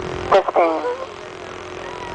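A man's voice calls out "fifteen" in a launch countdown, then steady background noise with a constant low hum; the rocket engines have not yet started.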